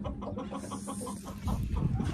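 Chickens clucking in a quick run of short notes, with a low rumble coming in near the end.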